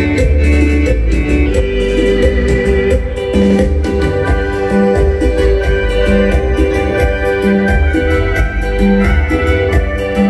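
Live keyboard band music played loud over a PA: an electronic organ-style keyboard melody over heavy bass and a steady, even dance beat.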